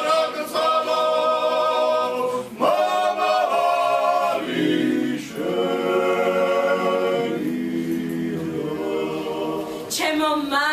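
Men's vocal ensemble singing unaccompanied, several voices holding sustained chords together. The phrases break off and restart about two and a half seconds in and again about five seconds in.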